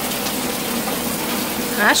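Rain falling steadily on a garden and patio, an even hiss of water; a woman's voice begins right at the end.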